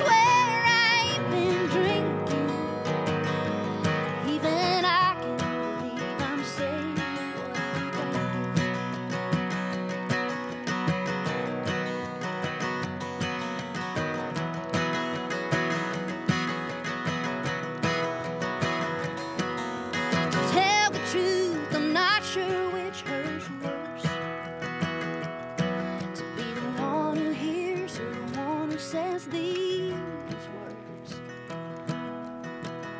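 Two acoustic guitars strumming and picking a country song, with a woman singing in the opening seconds and again from about twenty seconds in; in between the guitars play on alone.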